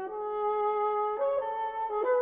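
Contemporary ensemble music: wind and brass instruments holding sustained chords, which move to new pitches about a second in and again just before the end.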